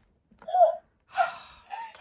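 A woman's breathy gasps: a short one about half a second in, then a longer, noisier breath out just after a second in.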